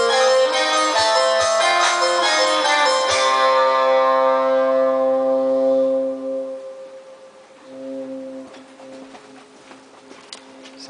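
A rock-pop band of keyboard, electric bass and drums plays the final bars of a song, with kick-drum thumps, then ends on a held chord about three seconds in that rings out and fades away by about six seconds. A quieter held note sounds briefly near eight seconds.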